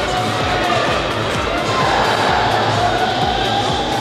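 Music over an ice rink's PA system just after a goal, with arena crowd noise beneath it, steady throughout.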